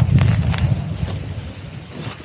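Wind rumbling on the camera's microphone while descending a snow slope at speed, with a hiss of sliding over snow. It eases off toward the end.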